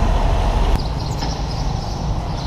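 Street traffic: motor vehicle engines running nearby, a steady low rumble.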